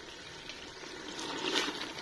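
Beef and gravy sizzling softly in ghee in an open pressure-cooker pot, with a spoon starting to stir and scrape through the meat about one and a half seconds in.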